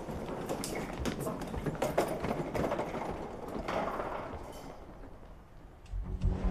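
Footsteps on a hard floor with the rattle of a wheeled suitcase being pulled along, fading away over the last couple of seconds.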